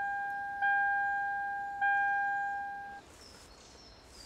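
A car's electronic warning chime, a single bell-like tone repeating about every 1.2 s and fading between strikes, signalling that the driver's door is open. It sounds twice more after the first strike and cuts off about three seconds in.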